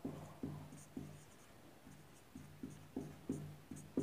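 Marker pen writing on a whiteboard: a faint run of short, irregular strokes as words are written out, each with a brief low hum from the board.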